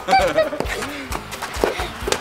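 Short, high, honk-like yelps from children at the start, then a few sharp thuds of a rubber playground ball being swatted and bouncing.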